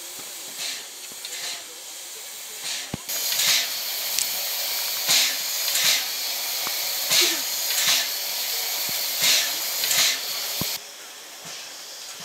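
Steam locomotive 555.0153 standing at the platform, letting off steam: a loud steady hiss starts about three seconds in and cuts off suddenly near the end, with rhythmic puffs coming in pairs through it.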